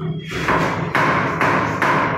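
Water glugging out of a large plastic water bottle as it is tipped into a cooking pot, in a regular run of about two glugs a second. A steady low hum runs underneath.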